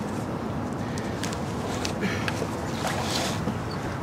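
Steady rush of wind and water noise around a small boat on the river, with a few faint knocks.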